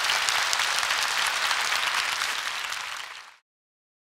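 Large audience applauding, many hands clapping together; the applause fades and cuts off about three and a half seconds in.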